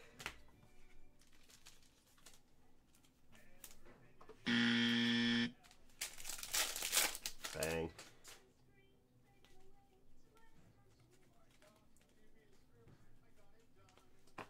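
An electronic buzz tone, steady and low-pitched with many overtones, sounds for about a second a few seconds in, starting and stopping abruptly. Just after it comes a noisy rustle; the rest is quiet handling of trading cards.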